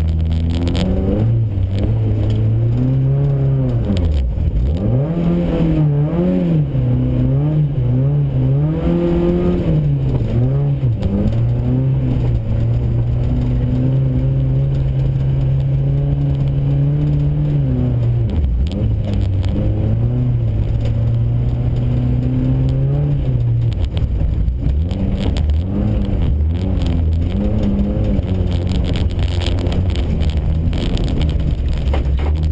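VW Golf GTI rally car's engine, heard from inside the car, revving up and down with throttle and gear changes. Its note drops sharply about four seconds in and again near eighteen seconds, and holds steady for several seconds in between.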